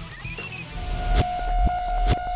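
Short electronic music sting for a TV sports logo bumper: a quick run of high chiming tones falling in pitch, then a held synth note over low booming hits about every half second.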